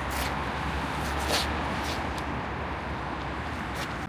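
Outdoor street ambience: a steady wash of road traffic noise with a low rumble, broken by a few short clicks, the sharpest about a second and a half in.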